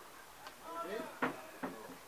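Distant men's voices calling across the pitch, then two sharp knocks about half a second apart in the second half.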